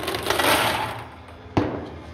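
Table tennis balls poured into the plastic hopper of a ping-pong robot, a short rattling clatter, followed about a second and a half in by a single sharp knock.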